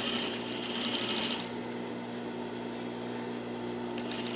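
Sewing machine stitching through fabric in a short fast run that stops about a second and a half in. The machine's motor keeps humming steadily until stitching starts again at the end.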